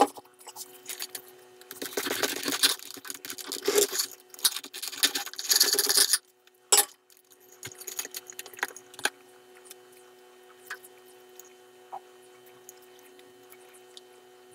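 Hands handling the halves of a crusty buckwheat loaf on a ceramic plate: a dense crackly rustle of crust and crumb for about four seconds, then a few sharp clicks. After that only a faint steady hum remains.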